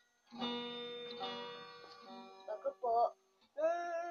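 Acoustic guitar chord strummed once about a third of a second in, its notes ringing and fading over about two seconds.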